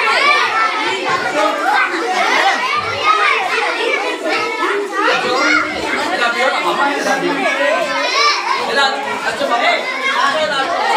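A crowd of children all talking and calling out at once, a dense, unbroken babble of many high young voices.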